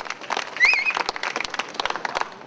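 Crowd of demonstrators clapping in quick, uneven claps, with a short rising whistle over the applause just over half a second in.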